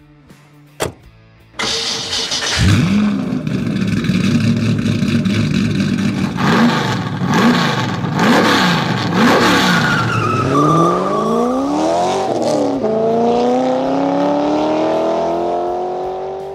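A V8 car engine catching with a loud burst, settling to a steady idle and blipped about four times, then accelerating hard with pitch climbing, dropping once at an upshift near thirteen seconds and climbing again before it fades out at the end.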